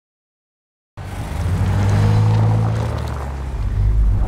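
Silence for about the first second, then the low hum of cars driving past, loudest around the middle.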